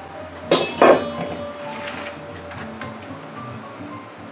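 Soft background music with two sharp metallic clanks from a stainless steel mixing bowl, about half a second apart and starting about half a second in, followed by a few lighter clicks.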